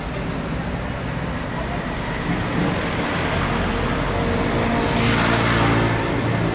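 City street traffic: a motor vehicle's engine grows louder from about two seconds in and is loudest near the end as it passes close.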